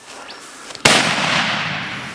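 A single rifle shot from a Heym double rifle in .450/400 Nitro Express, about a second in, with a long decaying echo trailing away over the following second.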